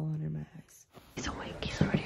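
A brief spoken sound, then hushed whispering with a couple of soft knocks near the end.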